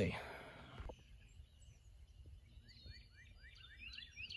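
Faint bird song: a run of short, quick, falling chirps starting about halfway through, over a faint low background rumble.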